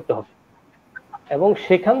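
Speech only: a person talking in Bengali, breaking off for about a second of near silence before going on.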